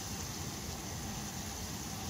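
Steady hiss of a pot of sugar syrup heating on the stove.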